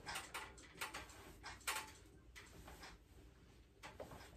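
Irregular light clicks and knocks, a few each second, from a metal power tower (pull-up and dip station) as it takes a person's weight during dips and knee raises.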